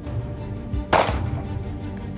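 A single pistol shot about a second in, sharp and brief with a short ring-out, over steady background music.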